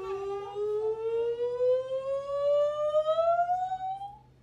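A woman's voice holding one long sung vowel that slides slowly and steadily up in pitch like a siren, a vocal glide sung as arms are raised in a children's music game.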